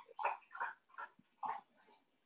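A woman's stifled laughter: about five short, breathy puffs of air through the nose and mouth, faint and trailing off.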